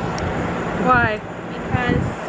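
A woman's voice in two short spoken phrases, about a second in and near the end, over steady background noise.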